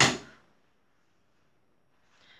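The tail of a spoken word with a short breathy hiss right at the start, then near silence: room tone.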